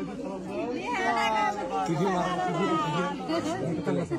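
Crowd chatter: many people talking over one another at once.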